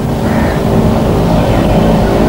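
A steady low background drone with faint humming tones.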